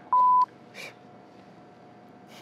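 A short, loud electronic beep at one steady pitch, lasting about a third of a second, followed by low room noise.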